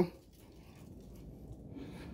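Quiet background: a faint, even low rumble with no distinct sound event.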